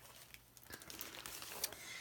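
Faint crinkling of a clear plastic sleeve holding sheets of glitter paper as it is handled. It starts about a third of the way in.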